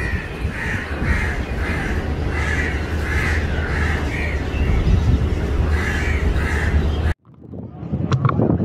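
Crows cawing in a quick series of short calls, about two a second, over a steady low background rumble; the sound cuts off suddenly near the end.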